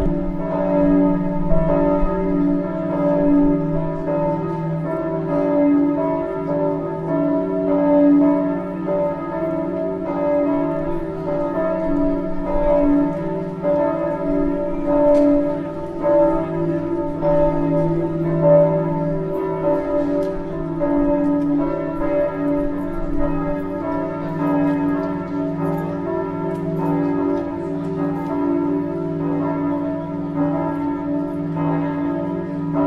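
Several church bells ringing together in a continuous peal, their tones overlapping and ringing on with no pause.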